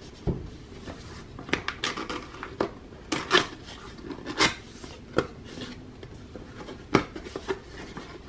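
Cardboard appliance box being opened by hand: the tuck flap pulled free and the inner flaps folded back. Irregular scrapes, rustles and taps of cardboard, with a few sharper clicks.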